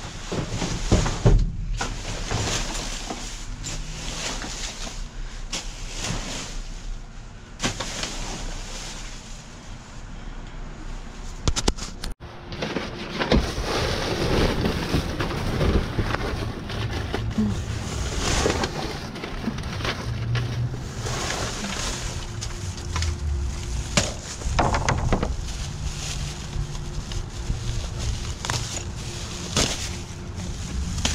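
Plastic bags, bubble wrap and cardboard rustling and crinkling as trash is shifted about in a dumpster, with scattered knocks. There is an abrupt break about twelve seconds in, after which low wind rumble on the microphone runs under the rustling.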